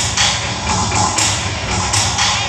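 Loud jatra stage music played over loudspeakers, with a heavy low beat.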